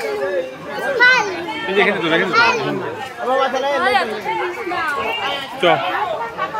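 Several people talking and calling out at once, with high children's voices among them.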